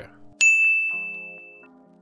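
A single bright ding, an editing sound effect, about half a second in, ringing on one high note and fading away over about a second, over soft background music.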